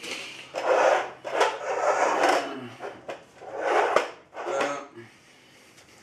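Rubbing and rustling handling noise in several swells, with a few light knocks, as someone moves around a bathroom scale on a concrete floor.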